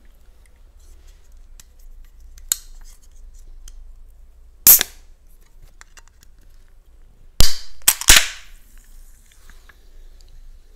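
Sharp clicks and pops from a drink container being handled: a faint click, one loud pop about halfway through, then three loud pops in quick succession near the end, the last trailing into a short hiss.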